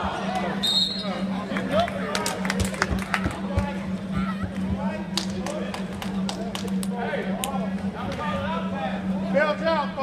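Indistinct voices of players and spectators calling out at a basketball game, with a cluster of sharp knocks in the middle, typical of a basketball bouncing on the hardwood court. A steady low hum runs underneath.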